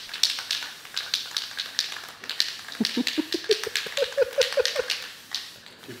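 A man laughing: a run of breathy bursts of laughter, turning into quick voiced 'ha-ha-ha' pulses that rise in pitch about halfway through.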